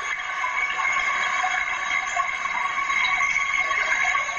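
Computer playback of a recording of computer-generated babbling-brook noise, run through noise-reduction filters: a steady, thin hiss with no bass and faint whistly tones running through it. This is the raw noise in which tape-voice (EVP) researchers listen for spirit voices.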